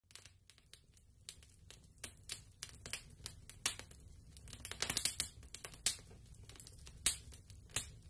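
Fire crackling: irregular sharp pops and snaps over a faint low rumble, thickest around the middle.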